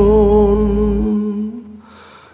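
A singer holds one long final note of a Christmas ballad over the backing music, the bass dropping away about a second in and the note fading out soon after, ending the song.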